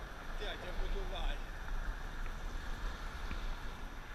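Wind buffeting a camera microphone outdoors, a steady low rumble that flutters in level, with a man's brief words in the first second or so.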